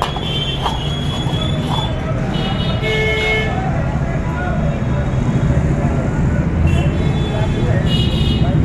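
Busy street noise: a steady low rumble of traffic with vehicle horns tooting several times, near the start, around the middle and at the end, and voices in the background.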